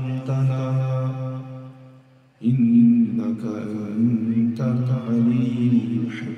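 A man's voice chanting in long, steady held notes, fading out about two seconds in; after a short gap a second man's voice starts chanting in long held notes at a higher pitch.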